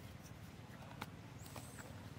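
Faint outdoor ambience: a low steady rumble with a few sharp clicks, the sharpest about a second in, and a brief thin high whistle in the second half.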